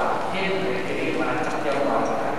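Speech only: a lecturer talking steadily.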